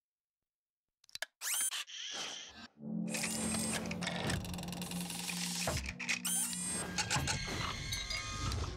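Mechanical sound effects of an old film camera's mechanism after about a second of silence: a few sharp clicks, then whirring sweeps, then from about three seconds in a busy clatter of clicks and rattles over a steady low hum as it runs.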